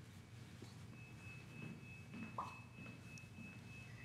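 Near silence: faint room tone and low hum, with a faint steady high-pitched tone starting about a second in.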